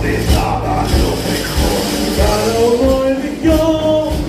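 Live morenada band music with a singing voice over a steady low drum beat.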